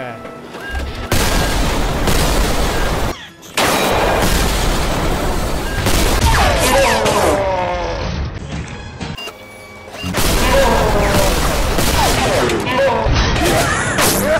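Action-film gunfire: long stretches of rapid shooting with booms, broken by two short lulls. Music and sweeping higher-pitched sound effects run over it.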